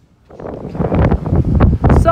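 Strong wind buffeting a phone's microphone, coming in suddenly about a third of a second in and swelling in gusts; it is really windy.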